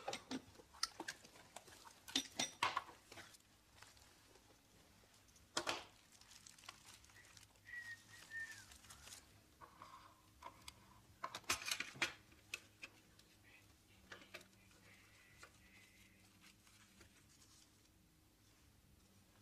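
Faint paper rustling with light taps and clicks from hands working at a tabletop, rolling a joint; a few sharper clicks stand out, and it quiets in the last few seconds.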